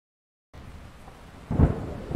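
Thunderstorm sound effect: a steady rain hiss comes in about half a second in, then a loud, deep roll of thunder about a second later.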